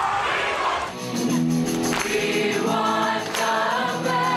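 A crowd of students shouting for about a second, then a student choir singing together in unison with hand clapping.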